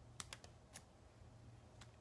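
A few faint, light clicks and taps of a wood-mounted rubber stamp being inked on an ink pad and pressed onto masking tape on a tabletop: a quick cluster in the first second and one more near the end.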